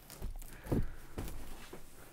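Soft footsteps on the RV floor with a few light knocks and rustles as the overhead cab bunk is handled, the clearest thud about a third of the way in.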